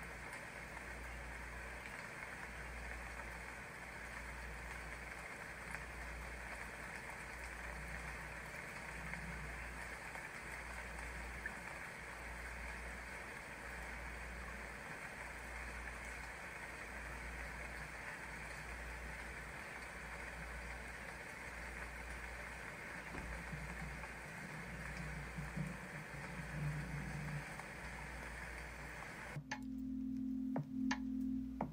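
Meditation soundscape: a steady rushing, water-like noise over a low hum that pulses in a slow, regular beat, with faint low tones rising out of it now and then. It cuts off abruptly just before the end.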